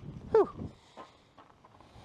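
A man's short wordless exclamation, one call sliding down in pitch, in reaction to bait scent spraying out of the bottle.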